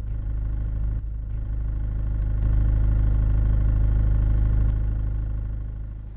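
Car engine running at low speed, heard from inside the cabin as a steady low rumble. It swells about halfway through and fades out near the end.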